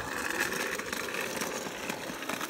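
Electric hoverboard with a go-kart seat attachment driving on asphalt: a steady noise of its motors and small wheels rolling.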